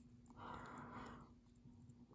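Near silence: faint room tone with a steady low hum, and a brief soft hiss about half a second in.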